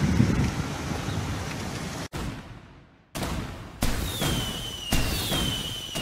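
Street noise with wind on the microphone, cut off about two seconds in. Then fireworks: sudden bangs and crackling, several seconds apart, under a high whistle that slowly falls in pitch.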